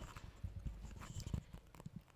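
A few scattered light knocks and bumps, like someone settling at a table microphone and handling it.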